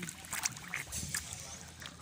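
Shallow seawater lapping and splashing close around people sitting in it, with a few small, sharp splashes.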